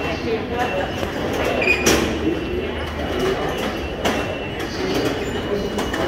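Busy London Underground ticket hall: a murmur of voices and footsteps over a steady low hum, with a few sharp clacks of the ticket barrier gates, one about two seconds in and another about four seconds in.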